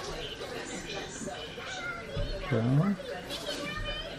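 Children's voices and play chatter in the background, high and wavering, with a short, louder, low voiced sound rising in pitch a little past the middle.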